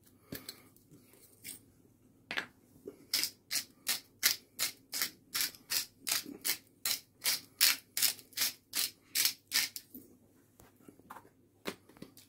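Hand-twisted pepper-and-salt grinder grinding seasoning, in short, even strokes about three a second, starting about two seconds in and stopping near the tenth second.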